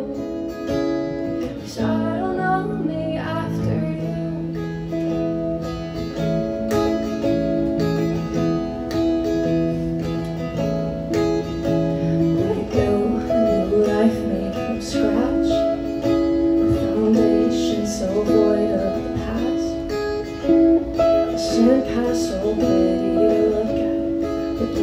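A woman singing a slow song to her own strummed acoustic guitar, a solo live performance with sustained chords under the melody.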